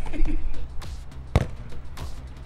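A single sharp kick of a water-filled football about a second and a half in, over background music.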